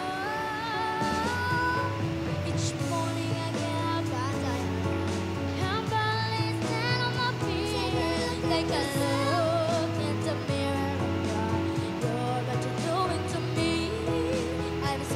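Boys' voices singing a pop ballad with vibrato over instrumental backing, with a sustained bass line coming in about a second in.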